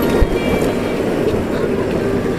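Motorcycle engine running at low speed through traffic, with steady road and wind noise on the bike-mounted microphone.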